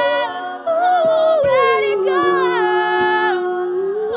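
All-female a cappella group singing: after a brief break about half a second in, a lead voice slides down and holds a long low note over sustained backing harmonies. A steady percussive beat runs underneath, about two hits a second.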